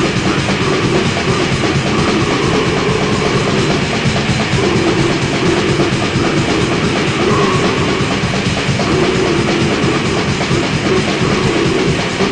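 Black/death metal from a cassette demo recording: distorted guitars over fast, dense, relentless drumming, with no let-up.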